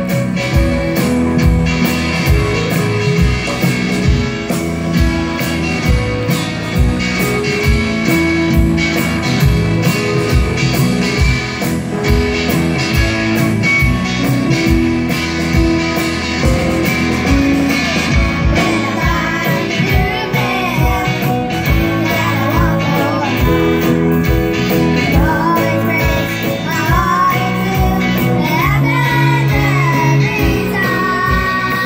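Live rock band playing through a stage PA, with a steady drum beat and guitar and young girls singing the lead vocals, the singing standing out more in the last third.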